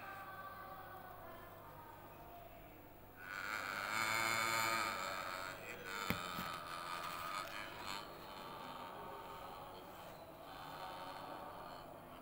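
A man's voice reciting in a drawn-out chant over the mosque's loudspeakers, the imam leading the congregational prayer. The chant is loudest from about three to six seconds in, with a sharp click about six seconds in.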